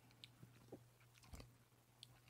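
Near silence with a handful of faint, short mouth clicks and lip smacks from someone tasting a sip of beer.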